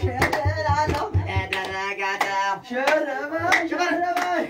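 Group singing with rhythmic handclapping keeping the beat for dancers. A low, regular beat runs under the clapping and stops about a second and a half in.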